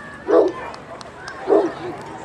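A dog barking twice, about a second apart.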